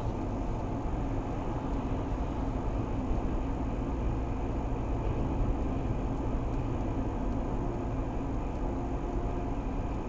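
Mercedes-Benz car cruising at about 65 km/h, a steady drone of tyre, road and engine noise heard from inside the cabin.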